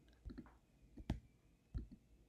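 A few faint, separate computer mouse clicks, from repeated tries to click and drag a file.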